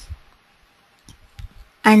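A few faint computer keyboard keystrokes, clicking about a second in, over quiet room tone.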